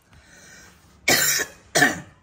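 Two loud coughs in quick succession, about a second in: a longer one, then a shorter one.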